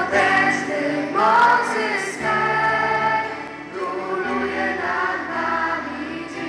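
A choir singing a slow hymn in long, held notes over steady low accompanying notes.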